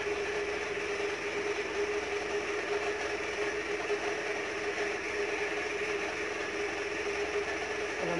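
Steady whirring kitchen hum, one constant tone over an even hiss, beside a pot of pork sinigang at a rolling boil on the stove.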